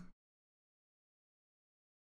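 Dead silence: the sound track drops to nothing just after the tail of a spoken word at the very start.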